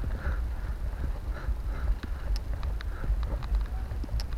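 Wind rumbling on the microphone of a bike-mounted camera moving along a paved trail, with irregular light clicks and rattles from the bike and mount.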